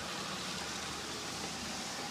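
Steady background hiss with a faint low hum, no distinct event.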